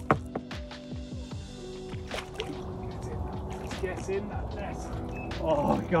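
Water splashing and sloshing as a big carp thrashes at the surface and is drawn into a landing net, over background music with long held notes. A voice comes in louder just before the end.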